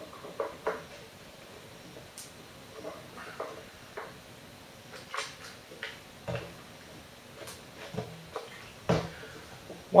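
Handling noises: scattered light clicks and knocks as a bicycle track pump's hose is moved and its valve head is fitted onto a copper tube.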